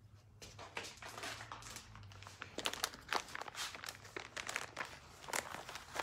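Plastic packet of baby wipes crinkling as it is handled, a run of faint, irregular crackles.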